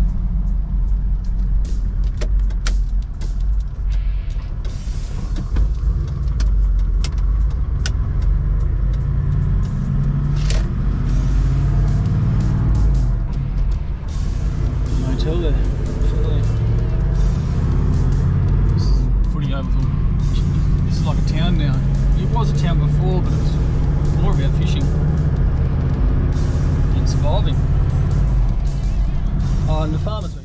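Engine and road noise inside a moving Toyota Land Cruiser's cabin: a steady low drone as it drives along. Music plays over it, with a voice-like melody coming in about halfway through.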